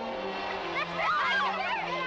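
Background orchestral score on steady held notes, with several excited voices calling out over one another from about half a second in.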